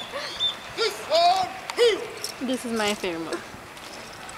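Human voices calling out a series of short drawn-out hoots, each rising and falling in pitch, with several overlapping near the end.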